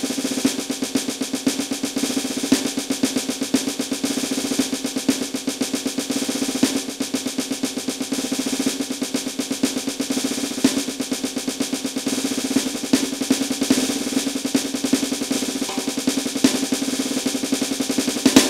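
Snare pad of an electronic drum kit played with sticks in a fast, unbroken rudiment: 32nd-note doubles and singles on the first beat and even 16th notes on the other three, repeated bar after bar as a hand-speed exercise balancing singles and doubles.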